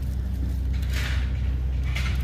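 Juniper foliage rustling briefly about a second in as a hand parts the branches to reach the plant's tag, over a steady low rumble.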